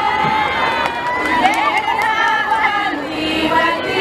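A group of women's voices chanting and calling out a yel-yel cheer together, with the noise of a large crowd behind them.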